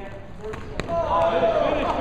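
Men shouting encouragement at two grapplers, the shouts getting louder and long-held from about a second in. Just before the shouting rises there is a single sharp thud from the grapplers on the mat.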